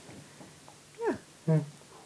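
Two short spoken "ja" sounds, about a second in and at about a second and a half, the first falling in pitch, with a quiet room in between.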